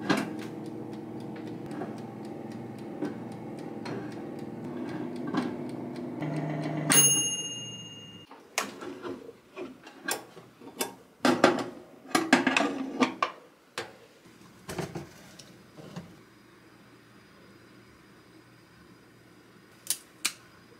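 Oven-type air fryer running with its rotisserie basket of chestnuts turning: a steady motor and fan hum with light ticking. About seven seconds in, the timer bell dings and fades as the motor shuts off. Metal clinks and rattles follow as the wire rotisserie basket is hooked out with its handle.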